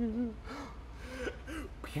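A sung note trailing off, then a short pause holding only a faint breath and soft, wavering voice sounds, before the singing starts again with a rising note right at the end.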